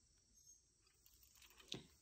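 Near silence: room tone, with a few faint soft clicks late on.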